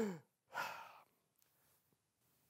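A man's voice trailing off with a falling pitch, then a short breathy exhale like a sigh about half a second in; the rest is very quiet.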